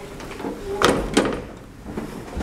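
The sliding gate of a 1907 Otis birdcage elevator being pushed by hand: a short rubbing slide, then two sharp metal clanks close together about a second in.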